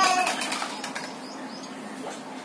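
Plastic toy rings clattering on a concrete floor, the clatter dying away within the first half second, then a steady low background hum.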